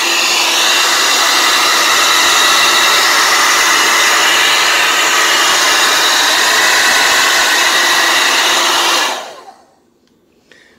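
Handheld hair dryer running on high, blowing warm air into the perforated rear vents of a flat-screen TV: a steady rush of air with a steady motor whine. It is switched off about nine seconds in and winds down quickly.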